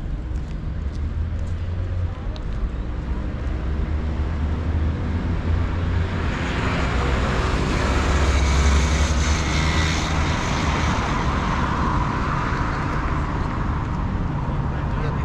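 Road traffic: a motor vehicle passing on the road, its noise swelling about halfway through and fading near the end, over a steady low rumble.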